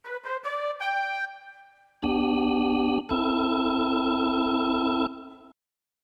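Yamaha Genos arranger keyboard playing its right-hand One Touch Setting voices: a short upward run of notes that die away, then two held chords, the first about a second long and the second about two seconds, released near the end.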